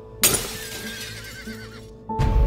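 A horse whinnying: it starts suddenly and loud about a quarter second in, then a wavering cry trails off toward the end.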